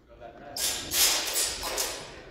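A loud wordless shout from a fencer during a sword exchange, starting about half a second in and lasting over a second.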